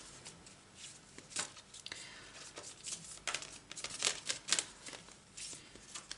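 Tarot cards being handled on a table: a series of soft, irregular taps and rustles as cards are shuffled and one is drawn from the deck.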